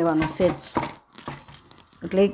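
Dough being kneaded by hand in a stainless steel bowl: a few words of speech at the start, then soft pats and light clicks of bangles against the steel.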